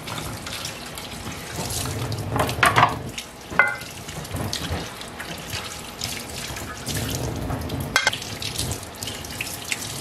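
Tap water running and splashing off non-stick waffle-maker plates as they are rinsed in a stainless steel sink. A few sharp clinks come through the splashing, the sharpest about eight seconds in.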